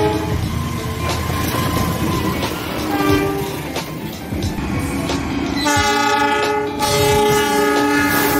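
A passing train rumbles on the track. A diesel locomotive's multi-tone horn gives a short blast about three seconds in, then a long loud blast from near six seconds that breaks off briefly and sounds again.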